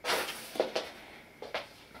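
Handling noise from a handheld camera moved among potted plants: a short rustle at the start, then a few light clicks and taps.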